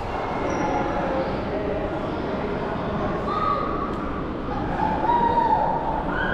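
Indistinct chatter of many people in a large hall, no single voice clear, with a raised, drawn-out voice standing out about five seconds in.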